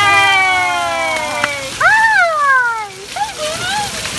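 A young child's high-pitched drawn-out squeals: one long call sliding down in pitch, then a higher call that rises and falls, then shorter wavering ones, over the steady splash of water jets from a splash-pad fountain.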